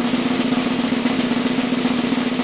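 Snare drum roll sound effect, a fast, even, unbroken roll heralding a final reveal.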